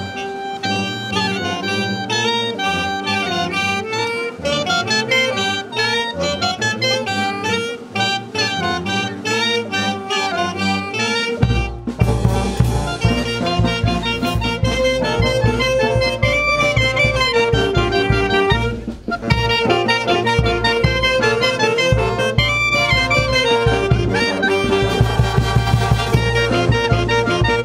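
Peruvian banda of saxophones and clarinets playing a lively melody in close harmony. About eleven seconds in, a heavy low beat of drums and bass comes in under the reeds.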